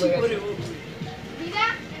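Children's voices shouting and calling to one another at play, over background music, with one high-pitched call near the end.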